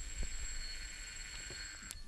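Electric doorbell ringing with a steady high buzz while the button is held, stopping with a click near the end.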